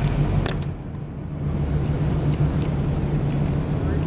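Steady low hum of a convention hall's background noise, with a couple of light clicks in the first half second.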